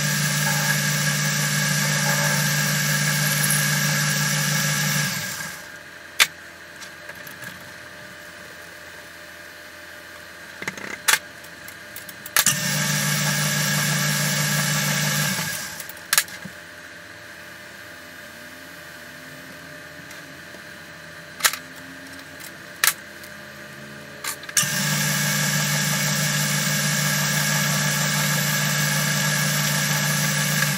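Small metal lathe running while a brass bar is faced off and drilled, with a steady hum. The lathe runs three times and stops in between. A few sharp clicks of handling fall in the quiet gaps.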